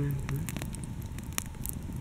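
Wood campfire crackling, with scattered sharp pops.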